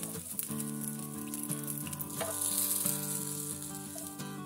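Egg-coated bread toast sizzling in hot oil in a nonstick frying pan, a steady hiss with a few light utensil clicks, under quiet background music.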